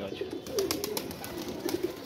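Domestic pigeons cooing: a run of low, warbling coos, repeated with short gaps.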